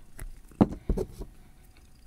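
Handling sounds of a rubber sport band being slid into the band slot of an Apple Watch case: a handful of short, small clicks and knocks in the first second or so, then quiet handling.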